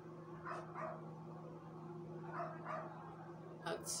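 A dog barking in the background: two short barks, then two more about two seconds later, over a steady low hum. A sharp click comes near the end.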